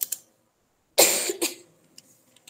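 A person coughs, short and loud, about a second in. Just before it, at the start, come a couple of computer keyboard keystrokes.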